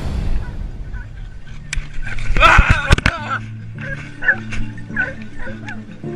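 Hunting dogs barking and yelping, with a loud cluster of sharp cracks about two and a half seconds in, typical of shotgun shots, mixed with high yelping; short barks follow after it over a steady low hum.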